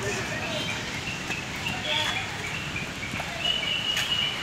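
Children's voices chattering and calling, with no clear words.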